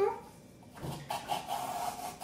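Squeaking as a balloon's plastic stick is pushed down into craft foam packed inside a mug, starting about a second in and going on in uneven bursts.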